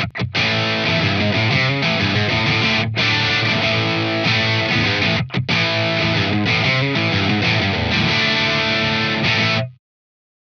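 Les Paul electric guitar played through a Joyo Oxford Sound overdrive pedal into a Vox AC15C1 valve amp: overdriven chords and riffs with a couple of brief pauses, cutting off just before the end.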